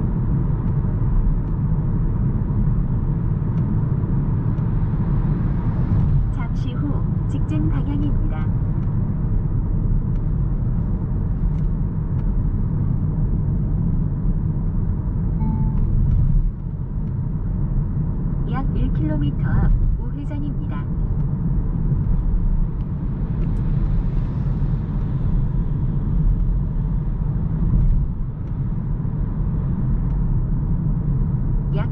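Steady road and tyre rumble heard inside the cabin of a Hyundai Kona Hybrid cruising on an expressway, with a few faint clicks and rattles.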